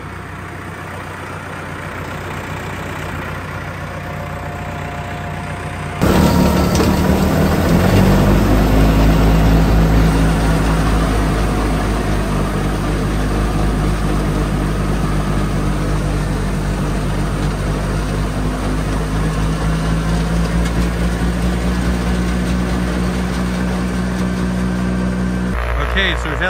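Diesel farm tractor idling as it warms up after a cold start at about −15. About six seconds in, the sound cuts to the same tractor running its PTO-driven snowblower, the engine working steadily under load and noticeably louder as the blower throws snow.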